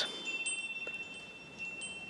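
Quiet pause: low room tone with faint, steady high-pitched whining tones, one of them starting just after the start and stopping shortly before the end.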